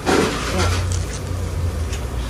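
Street ambience: a steady low rumble with indistinct voices in the background.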